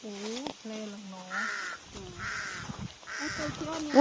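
A bird calling three times, short calls spaced about a second apart, over faint voices at the start.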